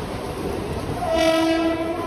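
A train horn sounds one steady, level blast just under a second long, starting about a second in. Underneath it is the running rumble of a Mumbai suburban local train moving through a station.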